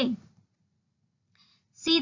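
Speech only: a lecturer's voice finishes a word, pauses for about a second and a half, and starts speaking again near the end.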